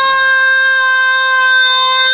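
A woman singing one long held note on a single high pitch.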